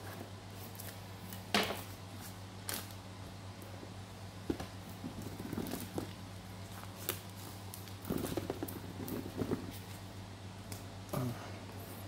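A knife slitting the plastic shrink-wrap on a small cardboard box, and the wrap being peeled off: scattered scrapes, taps and crinkles, the sharpest a scrape about 1.5 s in and a busier crinkling stretch later, over a steady low hum.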